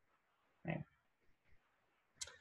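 A single short, quiet spoken "okay" a little before the middle; otherwise near silence.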